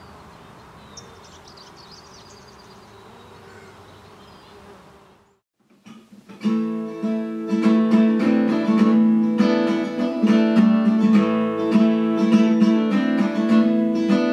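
Faint outdoor ambience with insects buzzing, which cuts out about five seconds in; then, after a moment of near silence, an acoustic guitar starts up, plucking a run of ringing notes that carries on to the end.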